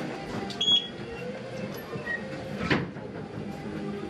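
An interior door being opened and let go: a sharp click about three quarters of a second in, then a louder knock a little before three seconds.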